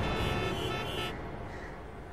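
Road traffic ambience, a low steady rumble, under the fading tail of a music sting whose tones stop about a second in.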